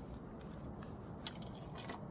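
Faint rubbing of a cloth over the clear cover and housing of an Indal street lamp, with a few small sharp clicks and scrapes near the end.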